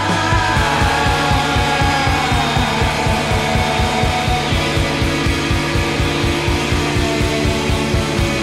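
Rock music with guitars, driven by a steady, fast pulse in the low end of about five beats a second; a held high note slides down over the first couple of seconds.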